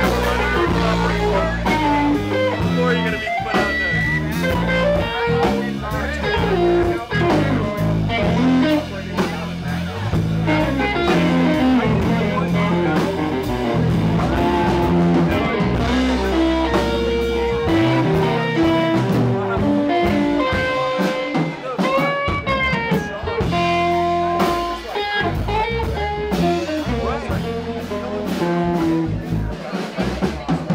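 Live band playing an instrumental: electric guitar over electric bass and drum kit, with no singing. For a few seconds past the middle the bass drops out while the guitar plays held, bending notes.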